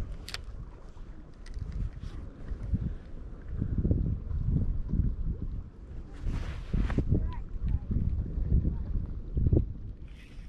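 Wind buffeting the microphone outdoors: an uneven, gusting low rumble, with a brief louder rustle about six seconds in.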